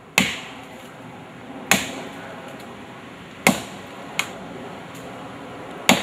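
Axe chopping into a fallen log: four sharp strikes about two seconds apart, with a smaller knock between the third and fourth.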